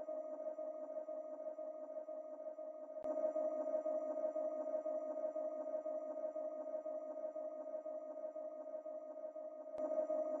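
Ambient background music: a steady, sustained synthesizer drone on one held note. A short click comes about three seconds in and again near the end.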